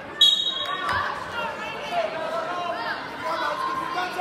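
A referee's whistle blows once, short and loud, as the wrestlers start from the referee's position. Then voices shout across the large gym.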